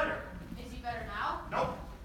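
A person's voice making two short falling sounds without clear words, one about halfway through and another soon after.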